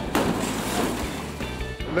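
A sudden loud crash-like noise just after the start, fading over about a second, as a 1956 Studebaker Hawk slams into a police car. Background music plays under it.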